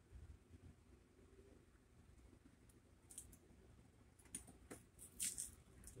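Near silence, with faint clicks and scrapes in the second half as multimeter test probes are pushed and scraped into a mains wall outlet without yet making contact.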